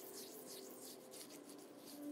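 Faint soft rubbing of fingertips working cleansing oil over the skin of the face.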